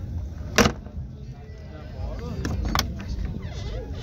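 A single loud, sharp clack about half a second in, then two lighter clicks near the three-second mark, over a background murmur of voices.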